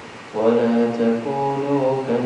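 A man reciting Quranic verses in a slow, melodic chant, holding long notes. There is a brief breath-pause at the start, then the voice comes back in.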